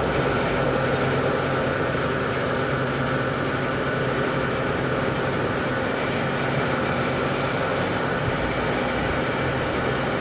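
Forecourt petrol pump dispensing fuel: a steady hum from the dispenser with fuel flowing through the nozzle into the car's tank.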